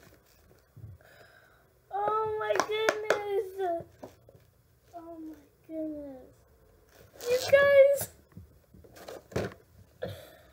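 Short wordless vocal sounds from a girl, two of them falling in pitch, with sharp clicks and crinkles from a clear plastic doll package being handled.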